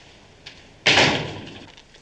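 A door slammed shut once, a little under a second in, the bang fading out over most of a second.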